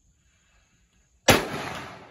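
A single rifle shot about a second and a quarter in, sharp and loud, followed by its echo dying away over the next second or so.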